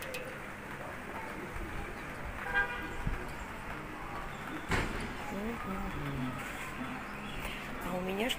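Outdoor residential-courtyard ambience with faint bird calls and distant voices. A short horn-like toot comes about two and a half seconds in, and a sharp knock near five seconds.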